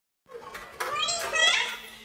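High-pitched children's voices chattering and calling out, starting after a moment of silence and fading near the end.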